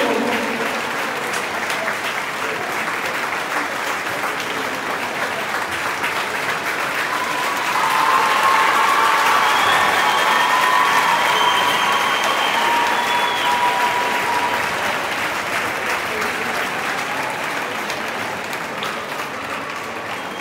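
A large audience applauding. The clapping grows louder about eight seconds in, with voices calling out over it, then slowly dies down.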